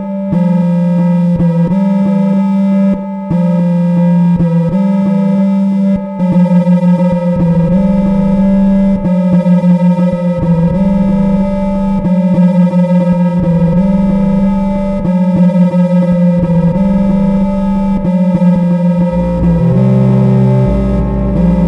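Electronic music made from oscillators: a steady droning tone with a low note that switches back and forth between two pitches every second or two, joined by an intermittent low rumble from about a third of the way in.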